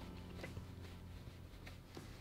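A towel rubbing on a dog's paw as it is wiped clean, a few faint soft rustles over a low steady hum.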